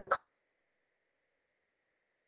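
A voice on a video call cut off abruptly just after the start, then near silence with only a faint steady hum: the call's audio has dropped out.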